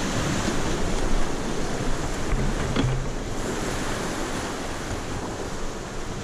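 Loud, steady rush of whitewater from a river rapid around an inflatable raft, swollen and fast after heavy rain, with wind buffeting the microphone.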